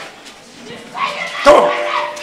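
A man's loud, harsh shout into a microphone about one and a half seconds in: a short shouted command during a deliverance prayer.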